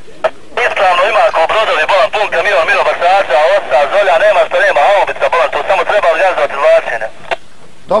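A voice replying over a handheld military walkie-talkie for about six and a half seconds. It sounds thin and tinny, squeezed into the radio's narrow band, with clicks of static through it.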